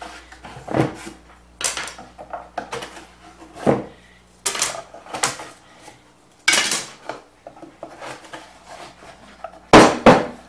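Thin wooden spacer strips being worked loose from between pine boards and tossed onto a wooden workbench, clattering. About eight or nine separate knocks and rattles, the loudest just before the end.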